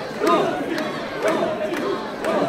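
A crowd of mikoshi bearers chanting in unison, a rhythmic shout about twice a second, over the hubbub of many voices.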